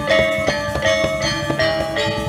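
Balinese gong kebyar gamelan playing: bronze metallophones strike a steady run of ringing, shimmering notes, about three a second.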